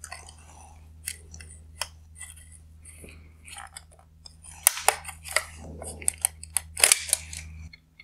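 Small plastic clicks and ticks from a headlight's LED controller circuit board and its plastic light housing being handled and worked loose, a quicker flurry of sharper clicks in the second half, over a faint steady low hum.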